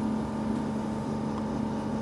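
Steady mechanical hum with a constant low tone and a fainter higher one, from equipment running in the room.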